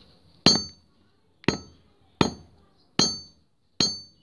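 Hammer striking a thin steel rod on a railway rail used as an anvil: five separate blows, each with a short metallic ring, about one every 0.8 seconds. The blows are flattening the rod's tip to form a drill bit.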